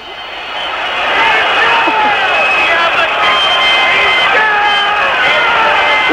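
Large stadium crowd cheering a goal, a dense mass of many voices that swells over the first second and then holds loud and steady.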